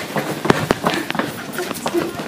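Running footsteps on a hard hallway floor: a quick, irregular string of sharp thumps.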